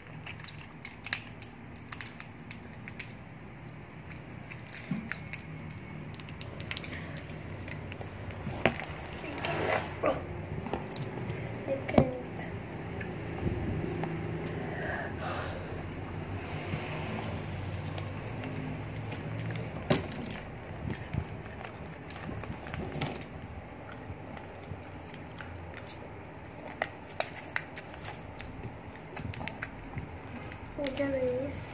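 Small plastic candy wrappers being torn open and crinkled by hand, with scattered clicks and taps of handling on the table over a low steady hum.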